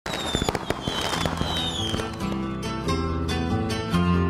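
Fireworks sound effect: a few slightly falling whistles over sharp crackling pops, giving way about two seconds in to music with plucked string notes.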